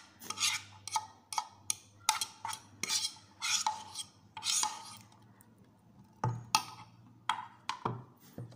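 A fork stirring and scraping through noodles in a bowl: an irregular run of short scrapes and rubs, several a second, with a duller knock about six seconds in.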